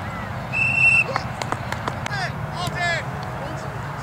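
A referee's whistle blown once, a short trilled blast about half a second in. Scattered shouting voices of players and spectators follow, with a few sharp clicks.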